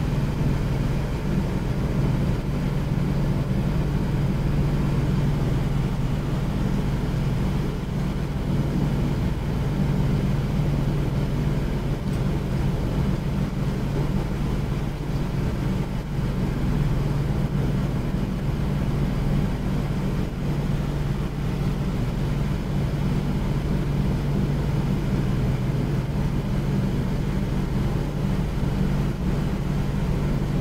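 A steady low mechanical hum that does not change.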